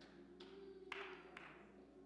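Near silence: a faint chord held steady on a church keyboard, with a few soft taps.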